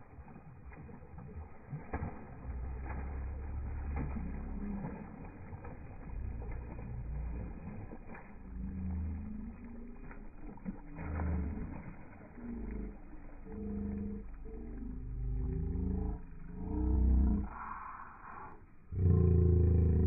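Slowed-down, pitched-down audio of a gar being hauled out of shallow water: deep, drawn-out, muffled voices and water sounds that come and go, loudest near the end.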